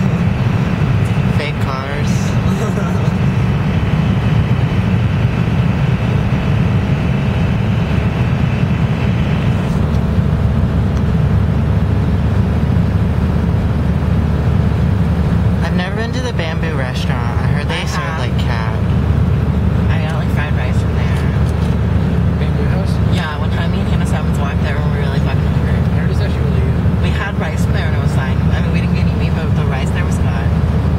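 Steady low rumble of road and engine noise inside a moving car's cabin. Muffled voice-like sounds come and go over it, mostly in the second half.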